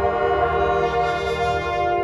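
Drum and bugle corps horn line of brass bugles holding one long, loud chord.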